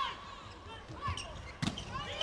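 Indoor volleyball rally: one sharp ball strike about one and a half seconds in, with faint short squeaks of shoes on the court floor.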